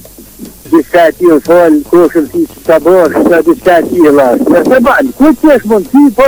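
A person talking without a break, a quieter moment in the first half-second, then continuous speech.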